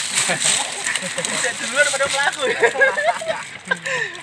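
Indistinct voices of several people talking at once, not close to the microphone.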